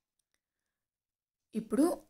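Near silence for about a second and a half, then a person starts speaking.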